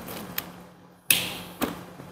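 A butane lighter being lit: a sharp click with a burst of gas hiss about a second in, a second click shortly after, then the flame's hiss fading.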